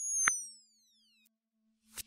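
Electronic logo sound effect: a short blip, then a high whistling tone that slides steadily down in pitch for about a second before cutting off.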